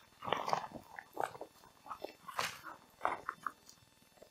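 A soft 0.3 mm TPU hydration bladder being handled: irregular crinkles and clicks from its plastic body and screw cap, with one louder rustle near the middle.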